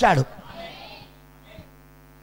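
A spoken word cuts off with a brief room echo, then a steady electrical mains hum, a low buzz with many evenly spaced overtones, from the microphone and sound system.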